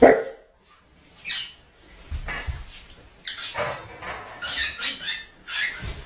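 A dog barking several times at irregular intervals, the first bark, right at the start, the loudest.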